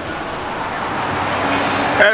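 Street traffic noise from a busy road, a steady hiss of passing cars that swells a little towards the end.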